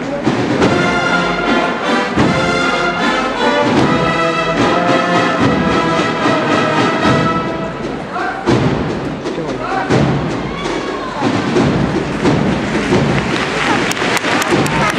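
A procession brass band of cornets, brass and drums plays a march that breaks off about eight seconds in. Crowd voices and shouts follow, with applause building near the end.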